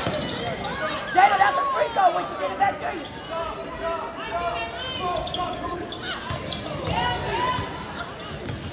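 A basketball bouncing on a hardwood gym floor during play, under a steady run of spectators' voices and shouts in the gymnasium.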